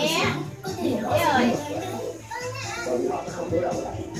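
Young children's voices chattering and calling out, with music playing in the background.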